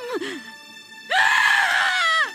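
A woman's high-pitched scream of grief, starting about a second in and falling in pitch as it ends, over a film score.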